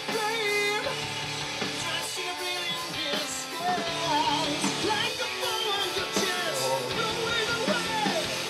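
Rock song with a sung lead vocal over guitar and band.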